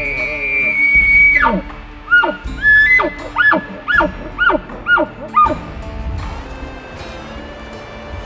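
Man-made elk bugle blown through a bugle tube. A high whistle is held, then drops away about a second and a half in, followed by a run of about seven quick rising-and-falling chuckles that stop about five and a half seconds in.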